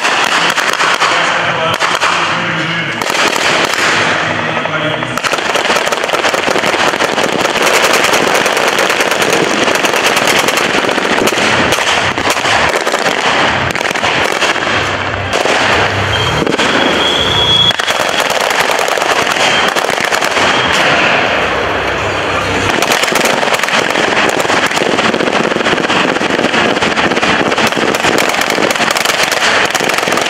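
Near-continuous automatic rifle fire with blank rounds, shots following each other rapidly, mixed with the bangs of pyrotechnic charges.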